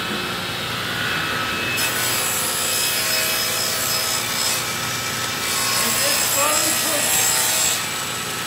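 Table saw running with a steady motor hum. From about two seconds in, its blade cuts through a sheet of plywood being fed into it, adding a loud, steady hiss.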